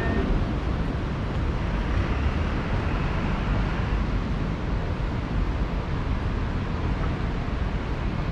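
Steady city street ambience: a continuous low rumble of road traffic, with no distinct events standing out.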